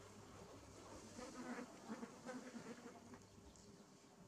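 Faint buzzing of a flying insect, louder from about a second in for about two seconds as it passes close, then fading.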